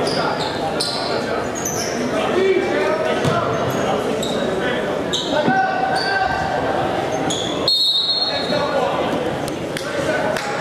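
Basketball game sounds echoing in a gymnasium: spectator voices and chatter, a ball bouncing and sneakers squeaking on the court floor. A short high-pitched tone sounds about eight seconds in.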